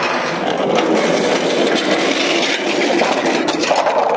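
Two rocker covers on small wheels rolling down a rusty steel channel ramp, a steady, loud rolling rattle of wheels and metal on steel.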